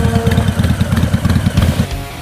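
Harley-Davidson Fat Boy 114's Milwaukee-Eight 114 V-twin idling with a deep, pulsing exhaust beat that cuts off shortly before the end.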